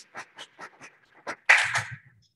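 Applause from a small in-person audience, individual claps heard about four or five a second, then a louder burst of noise with a low rumble near the end before the sound cuts off suddenly.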